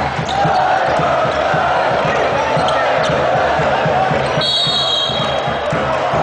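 Arena crowd noise of voices and shouting, with a basketball being dribbled on a hardwood court in a repeated bounce. About four and a half seconds in, a shrill whistle sounds for about a second.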